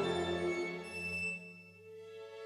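Violin and string orchestra holding sustained notes that die away about a second and a half in, leaving a soft, quiet held tone.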